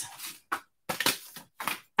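Handling noise from thin metal craft cutting dies being picked up and set out: three or four short rustling scrapes.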